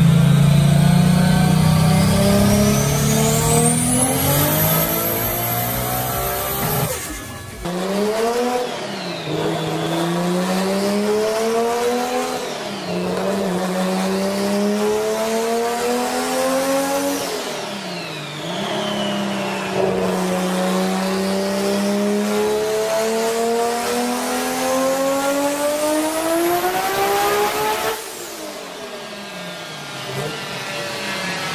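Tuned Mk4 Toyota Supras with turbocharged 2JZ straight-six engines running flat out on chassis dynamometers. The first revs steadily higher for about seven seconds, a high whine climbing with it. After a cut the second pulls through several gears, its pitch climbing and dropping back at each shift, then backs off near the end.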